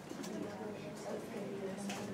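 Classroom chatter: students talking in pairs, voices indistinct and overlapping, with a few light clicks.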